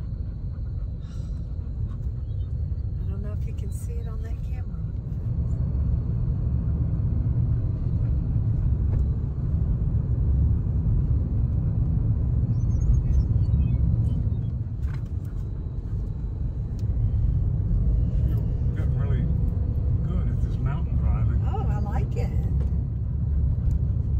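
Steady low rumble of road and engine noise inside a moving vehicle's cabin, growing louder about six seconds in.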